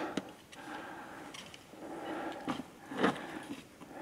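A climber breathing hard during a steep rock scramble, with a few sharp knocks and scrapes of boots, hands or gear on rock, the loudest about three seconds in.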